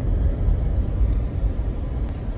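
Steady low rumble of a Jeep's engine and road noise heard inside the cabin while driving.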